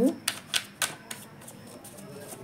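Tarot cards being shuffled by hand: three or four sharp clicks of cards snapping against each other in the first second, then a quieter rustle as the deck is squared.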